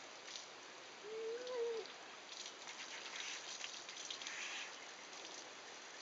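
Water from a hose shower nozzle spraying and running through a wet German Shepherd's coat as it is rinsed, swelling and easing as the nozzle moves. A brief rising-and-falling whine sounds a little after a second in.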